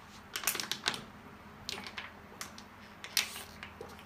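Clear plastic water bottle crackling and crinkling in the hand in irregular bursts as the water is gulped down in one go.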